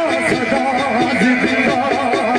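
A man chanting Pothohari sher, a sung Punjabi verse, into a microphone through a PA system, his voice wavering melodically over a steady instrumental accompaniment.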